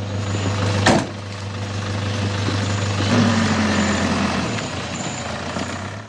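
Ambulance van's engine running steadily, with a loud slam, a door shutting, about a second in.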